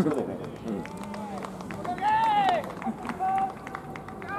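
Voices calling out in a ballpark: three high, drawn-out calls, the longest about two seconds in, over low background chatter, with a brief sharp sound at the very start.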